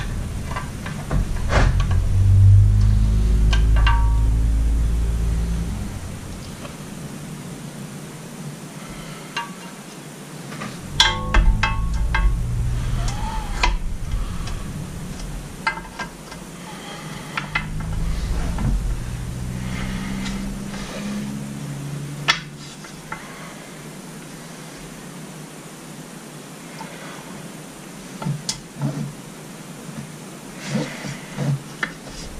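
Small metal latch hardware and its spring clicking and clinking against an outboard top cowl as they are fitted by hand, with low handling bumps. There is a quick run of rattling clicks about a third of the way in and one sharp click a little later.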